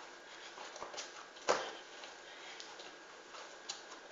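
Dough being kneaded by hand in a terracotta bowl: faint rubbing, with a few soft knocks as the dough is pressed against the bowl. The firmest knock comes about a second and a half in.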